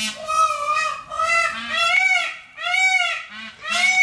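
A goose honking repeatedly: about five loud, drawn-out calls, each rising and falling in pitch.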